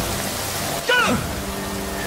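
Heavy rain pouring down steadily, with a short falling vocal cry about a second in.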